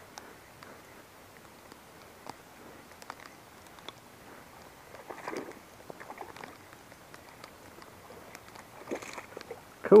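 A small largemouth bass being reeled in on a spinning rod, splashing at the surface about five seconds in, with scattered light ticks throughout. Near the end comes a short rustle as it comes in through the bank grass.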